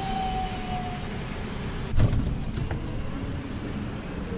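WKD electric commuter train braking into a platform: its wheels and brakes squeal in several high whistling tones, slightly falling in pitch, that die away about a second and a half in. A single knock follows about two seconds in, then a low rumble as the train comes to a stop.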